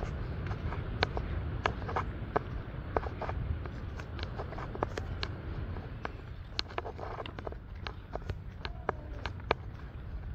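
Footsteps crunching on a sandy dirt path, a steady run of short sharp steps, over a steady low rumble.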